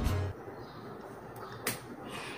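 Intro music cuts off just after the start, leaving quiet room tone, then a single sharp click about three-quarters of the way through.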